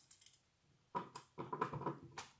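Small metal chain and fittings on the side wall of a die-cast toy tipper trailer being unhooked by hand: after a near-quiet first second, a quick run of light clicks and rattles.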